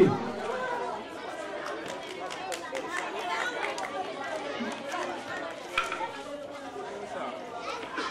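Background chatter of a seated outdoor crowd: many voices of adults and children talking over one another at a low, steady level, with no single voice standing out.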